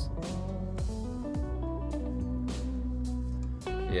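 Background music: plucked and strummed guitar with steady held notes.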